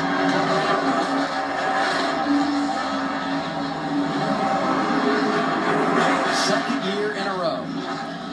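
NASCAR Xfinity Series stock car's V8 engine revving through a victory burnout, heard off a television speaker as a sustained drone that rises and falls slightly.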